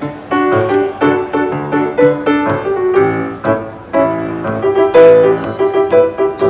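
Solo grand piano played with struck chords and a melody, in a steady rhythm, with a repeated middle-register note through the second half.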